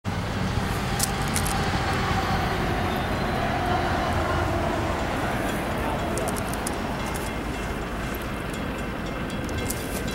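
Steady low rumble of an approaching diesel freight train still some distance off, its lead units GE locomotives (an ES44AH and a CW44AC), mixed with traffic noise from a parallel road.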